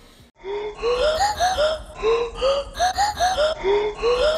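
A short, high-pitched burst of laughter repeated as a loop, each burst a run of rising then falling 'ha-ha' syllables, coming round about every second and a half. It starts about a third of a second in, after a brief silence.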